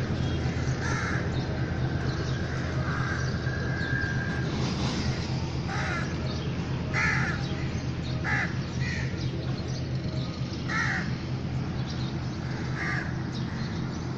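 Crows cawing, short calls every one or two seconds, over a steady low background hum.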